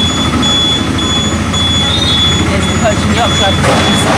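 Small motorboat's engine running steadily under way: a constant low drone under a steady rush of water and wind, with a faint high whine that comes and goes.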